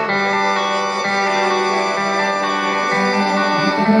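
Live band playing the slow opening of a song, guitar over held, sustained notes, picked up from the audience in a concert hall.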